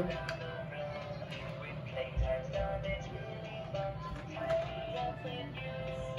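Fisher-Price musical toy cat playing its sung song after its button is pressed.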